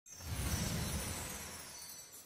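Logo-reveal sound effect: a sudden swell with a low rumble and a bright, sparkling shimmer, loudest about half a second in and then slowly fading away.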